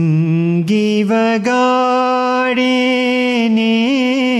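Male voice singing a ginan, holding one long sustained note with no words. It steps up in pitch a few times in the first second and a half, holds steady, and lifts briefly near the end.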